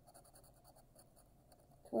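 Coin scraping the coating off a scratch-off lottery ticket: a faint run of quick scratching strokes.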